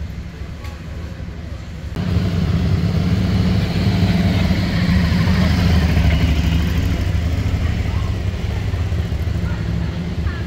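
Street noise dominated by a car engine running close by, with crowd voices underneath. The sound gets abruptly louder about two seconds in and then stays steady.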